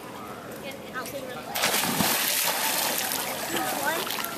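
A child jumping into a swimming pool: a big splash about one and a half seconds in, followed by water sloshing as it settles.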